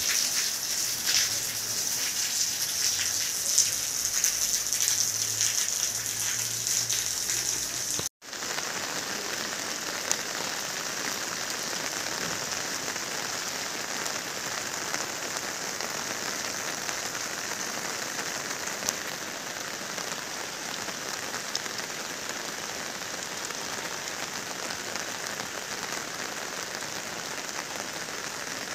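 Steady monsoon rain falling, a constant hiss of rainfall with scattered drops. The sound breaks off for an instant about eight seconds in, then carries on.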